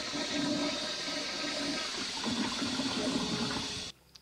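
Water running steadily with a rushing sound, cut off abruptly just before the end.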